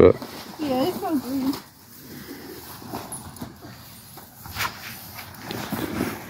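A voice speaks briefly in the first second or two, untranscribed. After that there is only quiet outdoor background with a couple of faint clicks near the middle.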